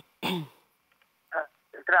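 Voices only: a short vocal sound, then a pause of about a second, then a caller's voice coming in over a telephone line near the end.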